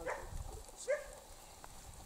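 Young elkhound dogs whining and yelping, two short calls: a falling whine right at the start and a sharper yelp about a second in. These are excited greeting noises as the dogs crowd around a person.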